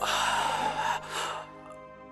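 A man's loud, breathy gasp lasting about a second, then a shorter breath, over a sustained background music drone.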